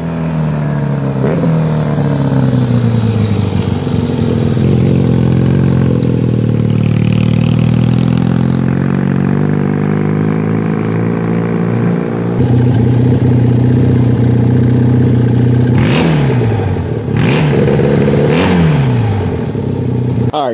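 1970 Honda CD175 parallel-twin engine through new dual megaphone mufflers, ridden on the road, its pitch falling over the first few seconds and then running steadily. After a cut about twelve seconds in it runs at a steady idle, with two quick throttle blips near the end.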